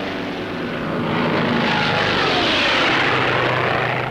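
Propeller aircraft flying past low: the engine drone swells to a peak a little after the middle, its pitch falling as the plane goes by.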